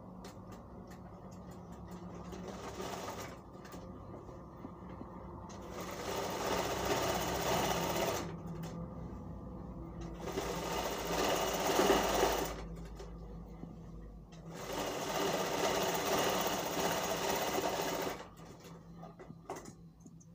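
Sewing machine stitching in four runs of two to three seconds each, with short pauses between, as a kurta seam is sewn.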